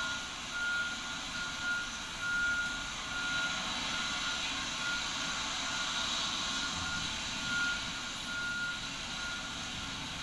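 A high electronic beep repeating about one to two times a second, in pulses of uneven length, over a steady hiss; the beeping fades out near the end.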